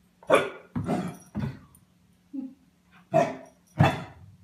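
Puppy barking: five short, sharp barks, three in quick succession early and two near the end, with a small yip between them.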